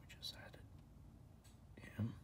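Faint whispered voice in short breathy bits, with a soft low bump at the very end.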